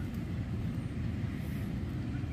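Steady low rumbling noise with no distinct events.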